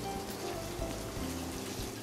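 Furikake-crusted ahi fillet searing in olive oil on a hot flat-top griddle: a steady sizzle, under soft background music.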